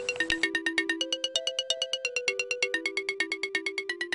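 Light electronic background music: a quick, even run of short bright repeated notes over a few held tones.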